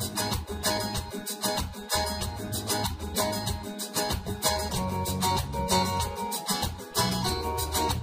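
Yamaha arranger keyboard playing its Pop Flamenco accompaniment style at tempo 95, driven by a chord held in the left hand: strummed guitar rhythm with bass and percussion. The rhythm stops abruptly at the very end.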